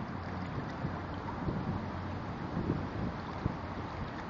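Wind rumbling steadily on the microphone over the wash of moving river water.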